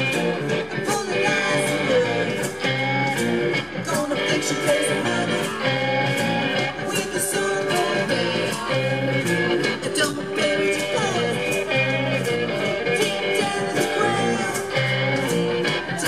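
Live blues-rock band playing: a woman singing over electric guitars and a steady drum beat, picked up by a camera's built-in microphone.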